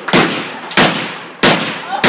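A rapid series of gunshots, three sharp reports about two-thirds of a second apart, each trailing off in a short echo.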